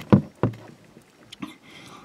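Three dull thumps in quick succession in the first half second, then a few faint light clicks about a second and a half in.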